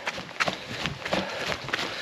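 A trail runner's footsteps, a steady rhythm of footfalls while running, picked up by a body-held camera.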